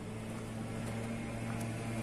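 Steady low hum at a constant pitch from a parked delivery truck left running.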